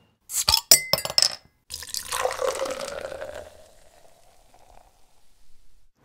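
Beer poured into a glass: a few sharp clicks and a hiss, then a pour with a ringing tone from the glass that fades out over about three seconds.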